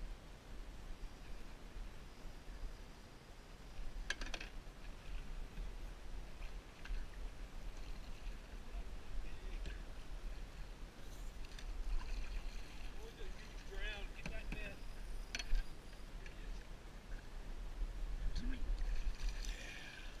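Steady low wind rumble on the microphone with river water lapping against a small boat's hull, and a few sharp clicks, one about four seconds in and one past the middle.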